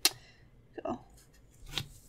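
Zebra Mildliner marker writing a number on planner paper, a faint scratching of the tip, with a sharp click right at the start and a single spoken word in between.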